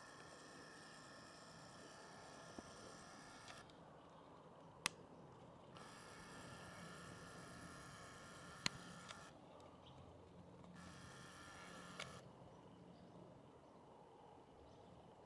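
Near silence, with the camera's zoom motor whirring faintly in three stretches as the shot zooms in, and two sharp clicks, one about five seconds in and one near nine seconds.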